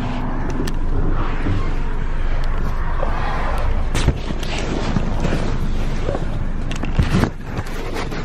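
A car's engine running with a steady low rumble, under loud rustling and rubbing from a phone being handled against clothing, with sharp knocks about four seconds in and again near seven seconds.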